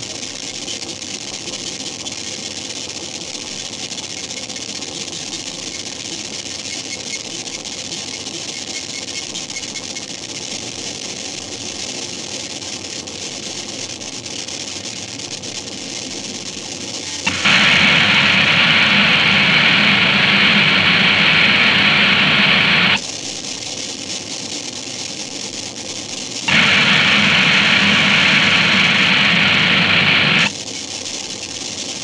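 Harsh noisecore recording: a continuous layer of loud, gritty static noise, broken twice by abrupt, much louder walls of dense noise, one about 17 seconds in lasting some five seconds and another near the end lasting about four seconds.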